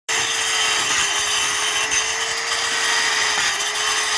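Handheld electric disc cutter running steadily at speed and cutting through terracotta clay tile: a continuous gritty hiss over the even whine of the motor.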